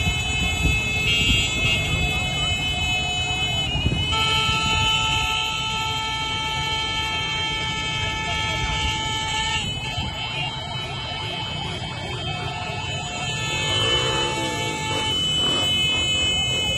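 Street crowd noise among motorcycles and cars: shouting voices and engines under long held vehicle horn blasts, one multi-tone horn holding steady from about four seconds in to nearly ten. Near the end a siren-like wail rises and falls.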